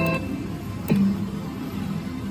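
Background music, with a sharp click near the start and another about a second in, each followed by a steady low note.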